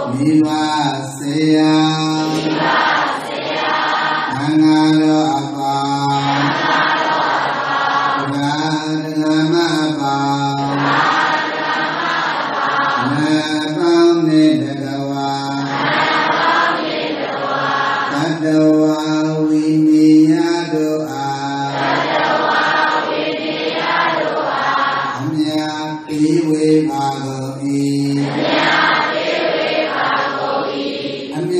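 Buddhist chanting by a group of voices in unison, in repeated phrases of a few seconds each on steady held notes, with short pauses between the phrases.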